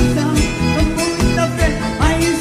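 Live sertanejo band music: an instrumental passage with plucked guitar over a steady bass line and beat.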